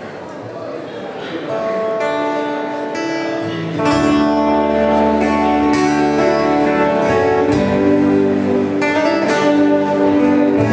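Folk band playing an instrumental opening in waltz time: acoustic guitars picked and strummed, with a bass guitar coming in about four seconds in and the music growing louder.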